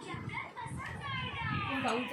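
Voices of children and adults talking over one another, some of them high children's voices.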